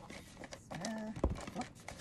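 Cardboard box and packaging rustling and scraping as a wrapped part is tugged out of a tight box, with one sharp knock about a second in.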